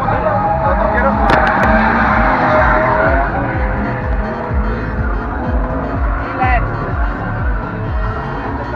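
A car drifting with its tyres squealing and engine running, loudest in the first half and easing off, over background music and voices.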